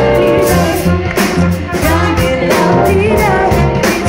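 A live band playing with a steady drum-kit beat and a bass line, while several voices sing together.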